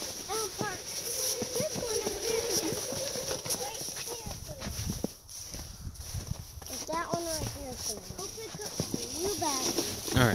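A young child's voice making wordless playful sounds in short bursts that slide up and down in pitch, with many short knocks and crunches between them.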